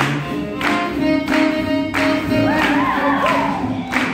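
Live swing jazz band playing for lindy hop dancing: sustained horn lines over a steady beat. Some gliding calls sound over the music around halfway through.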